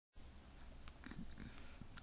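Faint room tone with a low steady hum and a few soft, faint sounds about halfway through.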